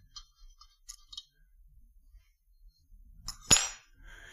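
Light metallic clinks of small valve-train parts being picked at on an aluminium cylinder head, then one sharp, much louder metal clang about three and a half seconds in as the removed valve spring is put down.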